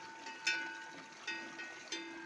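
A metal cattle bell clanking a few times at uneven intervals, each strike ringing on briefly at the same pitch; the strongest strike comes about half a second in.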